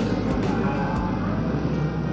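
Crowded courtroom ambience: a steady murmur of voices over a low hum, with a few short sharp clicks in the first second.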